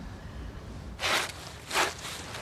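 Two short scrapes of a digging tool in trench soil, about two thirds of a second apart.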